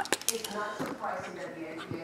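Faint background talk, like a sports talk radio playing in the room, with a couple of light clicks right at the start.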